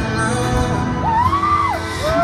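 Live acoustic guitar music, with a voice holding a high note that rises and then falls away in the second half.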